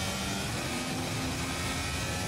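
Onboard audio of a Formula 1 car at speed: the turbo-hybrid V6 engine running steadily under wind and road noise.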